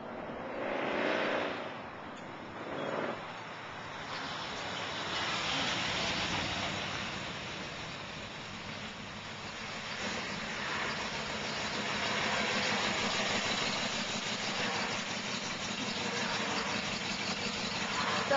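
A 1964 Chevy pickup's engine running as the truck drives up the road towards the listener and pulls up close. It grows louder as the truck nears, with a couple of brief swells early on.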